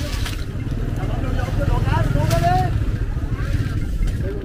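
A low engine runs steadily under the talk of people around the seafood baskets, strongest about one to three seconds in.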